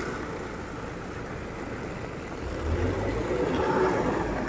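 Ashok Leyland truck's engine running close by, its low rumble swelling about two and a half seconds in.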